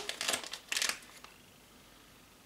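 A few short sniffs at a scented wax melt, close to the microphone, all within the first second.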